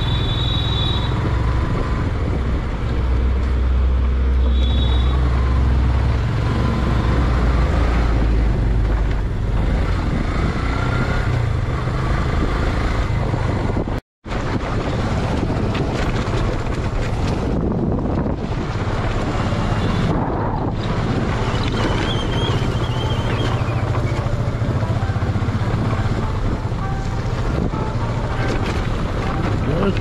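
Steady engine and road noise of a moving vehicle with a strong low rumble, and two short high beeps, one right at the start and another about four to five seconds in. The sound cuts out for an instant about halfway through.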